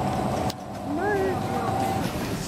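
Airport terminal background noise at a bag-drop conveyor, with a steady mid-pitched hum. A click about half a second in, then a short voice sound just after the middle.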